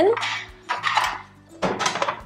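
Interchangeable sandwich-maker plates clattering against each other and the drawer as they are handled and set into a kitchen drawer: a few separate knocks, about half a second in, around one second and just before the end.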